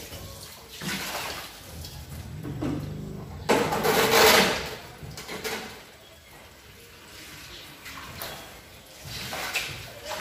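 Water pouring and splashing off a wet stainless tabletop gas stove onto a tiled countertop as the stove is tipped up to drain, in a few gushes, the biggest about four seconds in.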